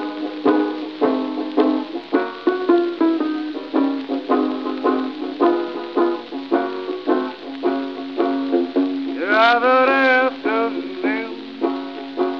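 Six-string banjo picking a bluesy instrumental introduction on an old recording with little top end: a steady run of sharply plucked notes, with a wavering, sliding line about nine seconds in.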